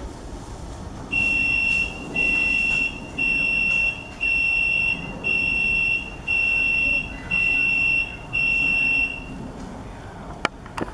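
An electronic warning beeper sounding eight long, high beeps, about one a second, over a low steady background rumble.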